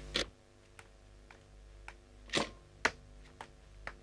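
Footsteps on a tiled floor, a sharp click about every half second, as a person walks into a small room. A steady low electrical hum runs underneath.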